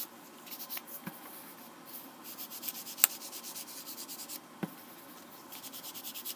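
Foam pad of an ink blending tool rubbed over cardstock in quick, even scratchy strokes, sponging ink onto the paper. There is a sharp tick about three seconds in and a softer knock a little later.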